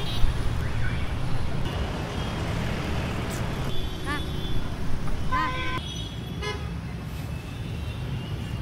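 Busy city street traffic: a steady road rumble, with a short vehicle horn toot about five seconds in and the voices of people on the street.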